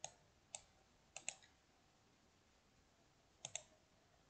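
Faint computer mouse clicks: single clicks at the start and about half a second later, a quick double click just after a second in, and another double click near the end.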